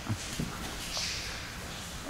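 Faint handling noise: a couple of light knocks and a brief soft rustle of fabric as the camera is carried around the trike, over a steady low hum.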